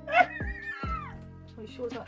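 A woman's high-pitched, drawn-out squealing whine that slides down in pitch at the end, a pained reaction to a mouthful of wasabi, over steady background music.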